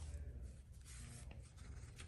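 Faint rustle of paper banknotes and a paper slip being handled by hand, over a low steady hum.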